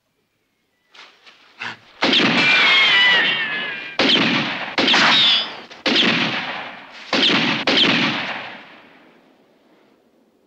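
Six revolver shots about a second apart, each followed by a long echoing tail, some with a wavering ricochet whine. Two faint clicks come just before the first shot.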